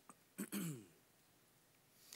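A man clears his throat once, briefly, about half a second in, the pitch falling; his voice is giving out.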